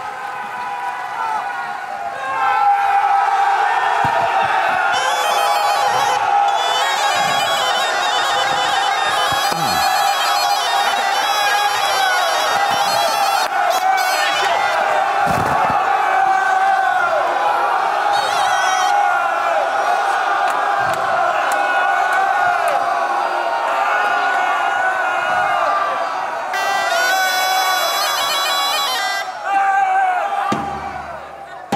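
Wind-instrument music over a steady droning note, mixed with the shouts of a crowd of men, loudest in two stretches.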